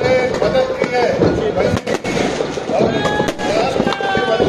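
Firecrackers in a burning Ravana effigy going off in several sharp bangs at irregular intervals, over a crowd's voices.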